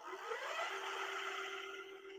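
Electric e-bike hub motor spinning the wheel up with no load: a whir whose pitch rises over the first half second, then holds a steady hum, fading near the end.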